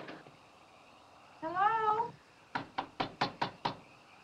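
A cat gives one rising meow, then a rapid run of about eight knocks on a glass-panelled door.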